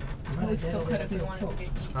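People talking quietly in the background, with a low steady hum underneath.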